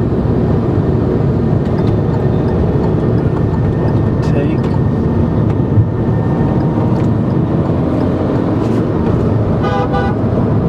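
Steady road and engine noise inside a moving car's cabin at highway speed. Short vehicle horn blasts sound about four seconds in and again near the end.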